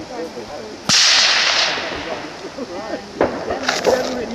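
A single rifle shot about a second in: a sharp crack followed by a decaying echo lasting about a second. Two or three fainter sharp clicks come near the end.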